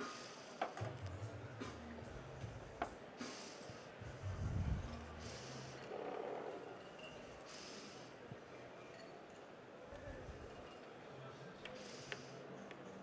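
Faint background music with a low, stepping bass line, under a few light clinks of porcelain cups and saucers. There are several short hissing bursts and one louder low thump about four and a half seconds in.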